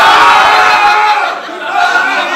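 A small group of people shouting and cheering at once, loud at first and dying down after about a second.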